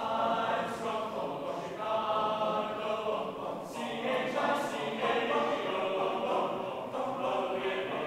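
Men's a cappella choir singing in unaccompanied harmony, sustained notes moving from chord to chord.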